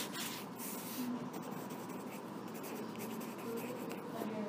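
Quiet classroom with faint scratching and rustling sounds and, in the background, a few faint snatches of children's voices.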